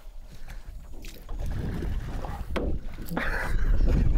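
Kayak paddles splashing in shallow sea water, in a few sharp strokes, with a low wind rumble on the microphone that grows louder toward the end.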